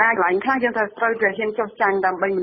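Speech only: one voice narrating a news report in Khmer without pause.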